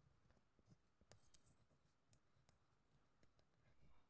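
Very faint scratching and scattered light ticks of a white pen writing on paper, over near silence.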